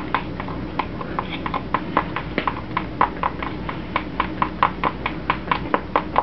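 Spatula working alginate impression material around a plastic mixing bowl by hand, a steady run of quick wet clicks about four a second as the paste is pressed against the bowl's side. The alginate is mixed with warm water.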